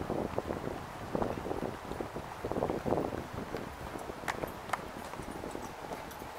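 Footsteps on a paved walkway as the camera-holder walks, mixed with rumbling wind and handling noise on the microphone. A couple of sharp clicks come about four and a half seconds in.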